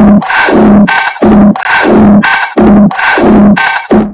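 A Latin pop drum loop played from Logic Pro's Quick Sampler in flex mode, triggered from a very high C so its pitch is shifted far up while the tempo stays the same. It gives a loud, rhythmic pulsing with pitch-shifting artifacts that sounds like an asthmatic donkey, and cuts off suddenly at the very end.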